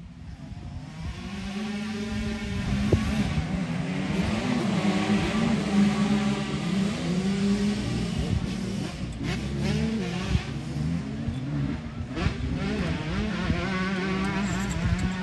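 Several motocross bikes racing past, their engines revving up and down as the riders work the throttle and gears, getting louder about two seconds in.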